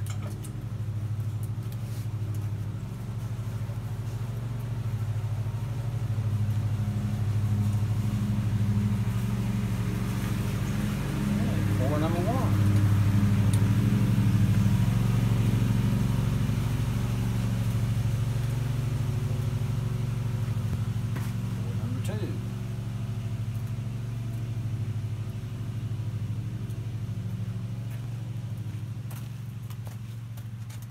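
A steady low mechanical drone, like a running motor, with two brief rising squeals, about twelve and twenty-two seconds in.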